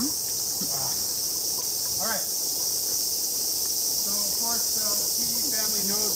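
Cicadas buzzing in the trees: a continuous, even, high-pitched drone that holds steady throughout, with faint voices in the background.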